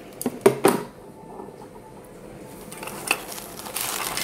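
Metal bangles clinking together several times in the first second, then fainter clicks. Near the end comes a rustle of foil tissue paper as a hand reaches into the gift box.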